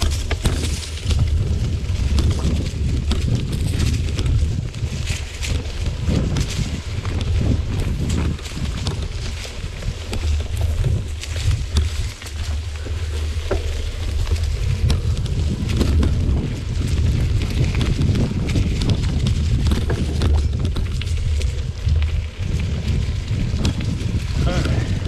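Mountain bike riding over a dirt singletrack covered in dry leaves. A steady low rumble of tyre and rushing-air noise on the bike-mounted camera, with frequent crackles and rattles from knobby tyres over leaves and twigs and the bike's parts shaking.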